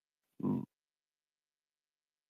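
A single short grunt-like vocal sound, about a quarter second long, from a participant's microphone in an online voice chat.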